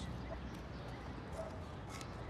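Quiet background ambience from a film soundtrack: a steady low hum with a few faint ticks.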